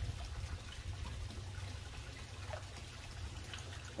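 Water trickling steadily into an aquaculture fish tank from its filter return pipes, over a low steady hum.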